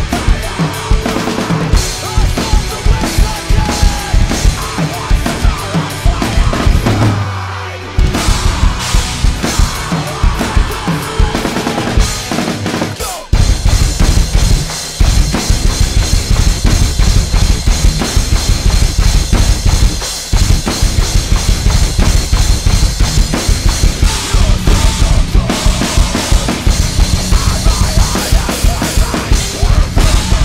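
SJC acoustic drum kit with Zildjian cymbals played hard along to a metalcore recording, with dense snare, cymbal and bass-drum hits over the band's guitars. About a quarter of the way in the drums stop briefly while a low note rings and fades. From just under halfway a much faster, denser run of low bass-drum strikes drives on.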